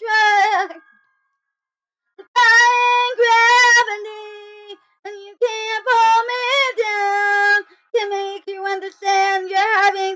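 A young girl singing solo in a high voice, phrase by phrase, with a wavering vibrato on the held notes and silent pauses between phrases, about a second in and again near the middle. No backing music is heard.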